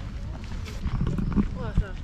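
A large bird calling about a second in, its call ending in short falling notes.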